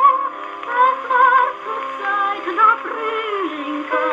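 A 1917 Victor acoustic phonograph playing a 1930s German song from a 78 rpm record: a singing voice with strong vibrato and an orchestral accompaniment. The sound is thin, with no deep bass and no high treble. A held sung note ends just after the start, and a louder phrase comes in near the end.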